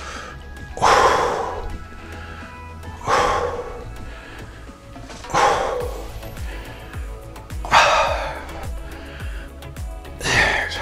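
A man's forceful exhalations, four of them a little over two seconds apart, one with each rep of a dumbbell chest press, over background music.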